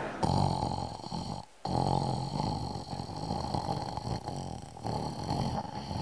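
A man imitating snoring into a handheld microphone: several long snores with a brief gap about a second and a half in.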